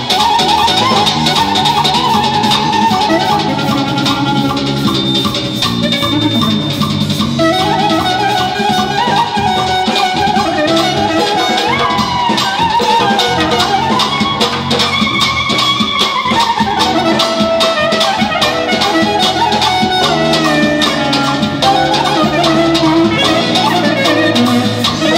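Clarinet playing a fast, ornamented folk dance melody full of runs and slides over rapid, steady nağara drum strokes.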